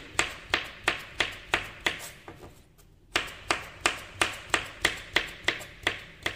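Knife chopping young coconut flesh into strips on a bamboo cutting board, each stroke a sharp knock on the board, about three a second. The chopping pauses briefly a little after two seconds in, then carries on at the same pace.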